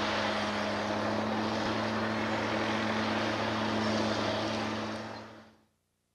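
Crawler bulldozer's diesel engine running steadily with a constant hum. The sound fades out about five seconds in.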